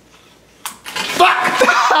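A single sharp snap about two thirds of a second in, as the spring bar of a prank snapping-gum pack clacks shut on a finger, followed by laughter.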